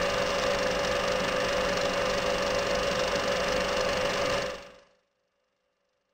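Old film projector sound effect: a steady mechanical whirr with a held hum, fading out near the end.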